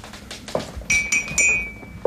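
Crockery and glassware clinking as they are handled on a table: several light, sharp clinks with a brief ringing tone, bunched in the second half.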